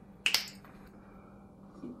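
Fingers snapping: two sharp snaps in quick succession about a quarter second in.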